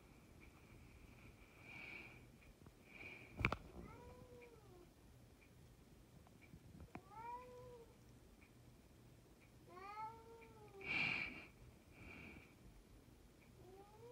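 A house cat meowing three times, a few seconds apart, each call rising then falling in pitch. A sharp click comes just before the first meow, and a short hissy burst about a second after the last.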